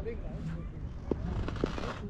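Wind rumbling on a body-worn action camera's microphone, under faint distant voices, with two light taps about a second and a second and a half in.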